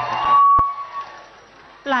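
Brief microphone feedback through a stage PA: a single steady high ringing tone swells and fades over about a second. A sharp knock comes in the middle of it, with the handheld microphone held low toward the stage floor.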